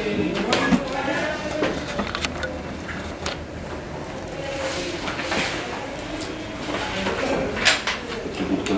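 Indistinct background talk around a table, with paper handling and scattered light clicks and knocks of pens and papers on the tabletop; one sharper knock comes near the end.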